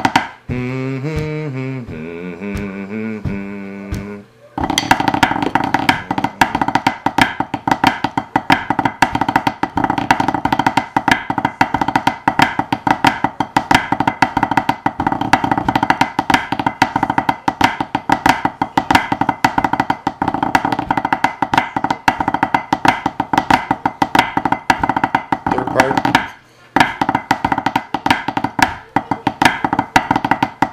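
A voice hums a melody for the first few seconds. Then snare parts are played with drumsticks on a practice pad: a fast, dense run of strokes over a steady sustained tone, with a short break near the end.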